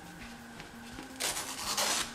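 Rubbing rustle of cloth close to the microphone, starting a little past a second in and lasting under a second, after a nearly quiet start.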